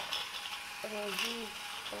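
Battery-powered toy Thomas engine's small motor and plastic gears running as it drives along plastic track. A short pitched voice sound comes in about a second in.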